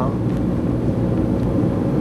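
Steady low rumble of a moving car's engine and tyres on the road, heard inside the cabin.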